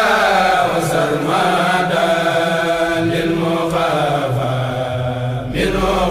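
A kourel chanting a Mouride khassida, an Arabic Sufi religious poem, in long, drawn-out melismatic lines that glide in pitch; a new verse line begins near the end.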